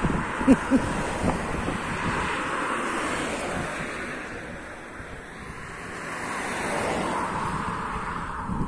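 Cars passing on a two-lane highway: a rush of tyre and engine noise that swells as one car goes by in the first few seconds, fades, then builds again near the end as a second car passes.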